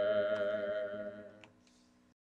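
A man and a woman singing a hymn unaccompanied, holding its last long note until it fades out about a second and a half in. There is a faint click near the end.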